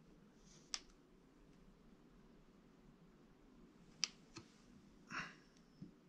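Near silence broken by a few faint, sharp clicks, one about a second in and two around four seconds in, and a brief scrape near five seconds. These come from a wire loop sculpting tool working and being handled at a clay sculpture.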